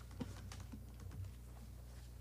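Quiet room tone with a steady low electrical hum and a few soft, scattered clicks and taps.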